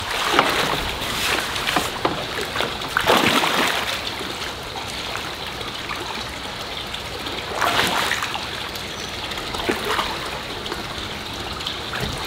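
Shallow pond water splashing and sloshing as a koi is netted and worked into a fish bag, with louder splashes about three and eight seconds in, over a steady sound of running water.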